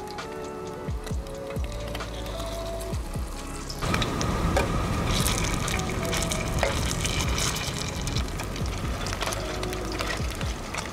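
Surfperch fish balls frying in hot oil in a stainless steel saucepan, a steady sizzle that grows louder about four seconds in.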